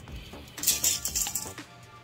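Steel tape measure blade retracting into its case: a rattling zip starting about half a second in and lasting about a second, over background music.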